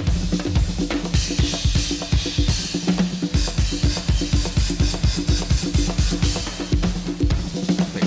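Live drum kit solo: a fast, dense run of even strokes on bass drum, snare and cymbals, with no other instruments standing out.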